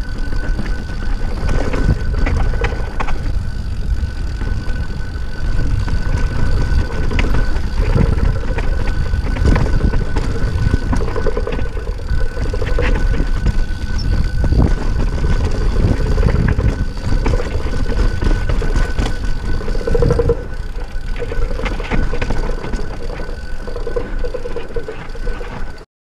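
Yeti SB6 mountain bike ridden downhill over dirt and rock: a constant rush of wind on the microphone, tyres rolling on the trail, and frequent knocks and rattles as the bike goes over bumps. The sound cuts off abruptly just before the end.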